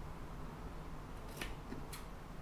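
Scissors snipping through a folded bed sheet: two short crisp snips about half a second apart in the second half.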